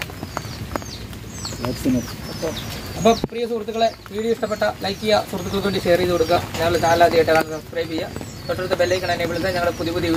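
Birds calling with short, high, repeated chirps, over people talking.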